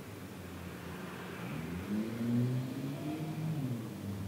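Faint engine of a passing vehicle, rising and then falling in pitch over about two seconds, over quiet room tone.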